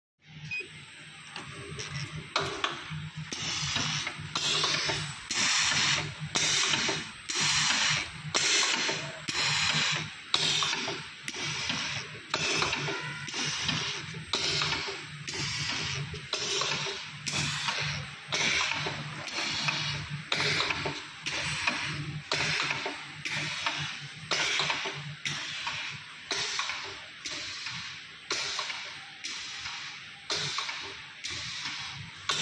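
Small vertical liquid sachet packing machine running. Each bag cycle gives a noisy stroke, repeating evenly about once a second over a steady low hum.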